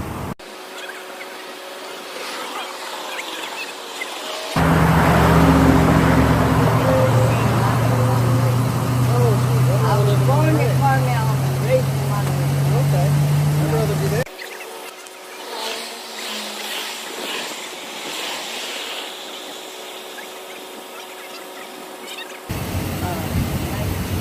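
A motor vehicle's engine running close by for about ten seconds in the middle, a steady low hum that creeps slightly up in pitch. Before and after it there is only faint street ambience with murmured voices.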